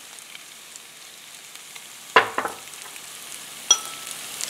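Shrimp frying with onion and garlic in a pan, a steady sizzle. A few quick knocks sound about two seconds in, and a single ringing clink near the end, as a utensil strikes the pan while stirring.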